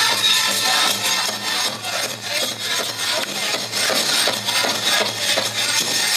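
Powwow drum and singers performing a grand entry song, the drum beating fast and steadily, with the jingle of dancers' regalia over it.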